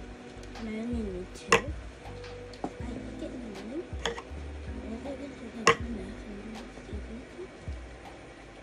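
Two sharp plastic clicks about four seconds apart, with a few fainter ticks, from a child-resistant gummy bottle's cap being handled, over a soft voice and background music.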